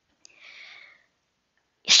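A woman's short, faint intake of breath, a soft hiss lasting about half a second, just after a small mouth click.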